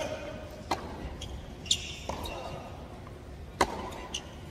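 Tennis ball hit by racquets and bouncing on a hard court during a rally: three sharp pops, the loudest near the end, over the low murmur of a crowd.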